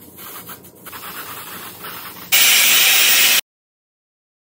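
Aerosol lace tint spray hissing onto a wig's lace: quiet handling and rubbing first, then one loud hiss about a second long starting a little past two seconds in, which cuts off suddenly.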